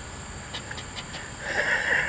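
A plastic scraper scratching the coating off a scratch-off lottery ticket: a few short scrapes, then a longer, louder scrape near the end. Under it runs a steady high insect drone.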